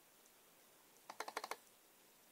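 A quick run of about six sharp plastic clicks from a laptop's controls, about a second in and lasting half a second, as the Samsung Kies icon is opened.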